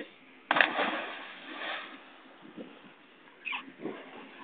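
A sudden splash of a person landing in water about half a second in, the noise dying away over a second or so.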